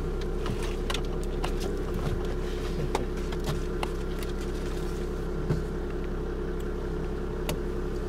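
Engine of a stationary safari tour vehicle idling, a steady low hum, with scattered faint clicks.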